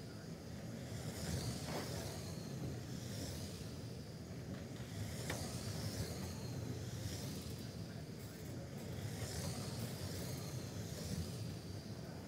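Radio-controlled 1/10-scale oval race cars lapping an indoor track, their electric motors whining in a rise and fall as they pass by about every two seconds, over a steady hum.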